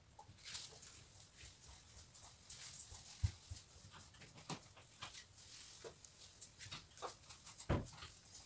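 Canvas being tilted and set back down on a tabletop: faint scattered clicks and rustles of handling, with a low thump about three seconds in and a louder one near the end.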